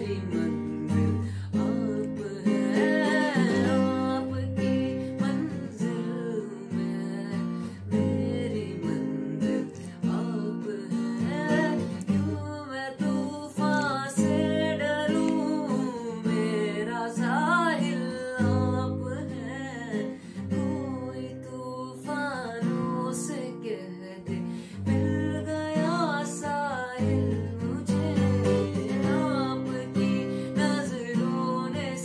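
Acoustic guitar strummed and picked in chords, with a male voice singing a melody over it.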